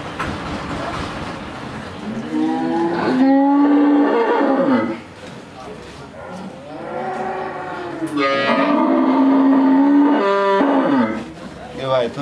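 A cow mooing: two long, loud calls, the first starting about two seconds in and the second about eight seconds in, with a fainter call between them.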